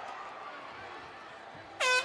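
Arena horn sounding one loud, steady blast near the end, over crowd murmur: the signal that ends the round.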